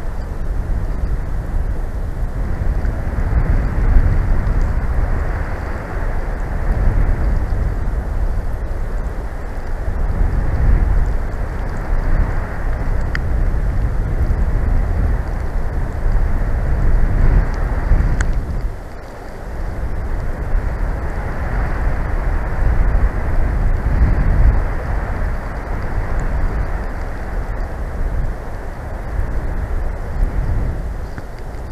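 Gusting wind in a snowstorm buffeting the microphone: a loud, low rumbling rush that swells and eases in gusts, with a brief lull about two-thirds of the way through.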